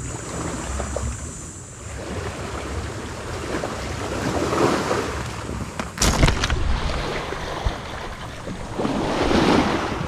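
Small waves washing in on the shore, swelling twice, with wind buffeting the microphone. About six seconds in there is a sharp knock as the camera is handled.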